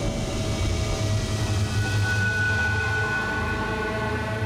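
Dramatic TV background score: a sustained drone of held synth tones over a heavy low rumble, with a high held tone coming in about halfway through.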